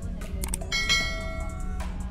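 A couple of quick clicks, then a bright bell-like chime about two-thirds of a second in that rings for about a second, over background music and a low rumble of the car in motion.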